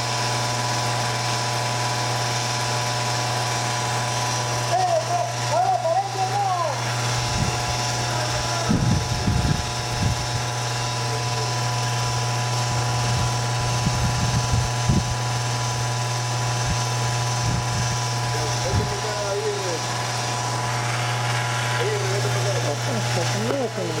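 Electric motor-driven pumps running with a steady hum, discharging liquid through steel pipes into a drum now that the flow has resumed after what seemed a blockage. A few low thumps come through the middle.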